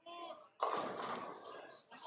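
Bowling ball striking the pins about half a second in, with a sudden crash of pins clattering that dies away over about a second, among voices from the crowd.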